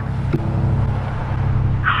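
A steady low rumbling drone with a fast, even flutter and a faint hiss above it.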